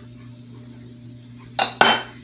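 Two quick clinks of kitchenware, such as a measuring cup or small prep dish knocking against the bowl or the counter, about a second and a half in and a fifth of a second apart, each with a short bright ring. A low steady hum runs underneath.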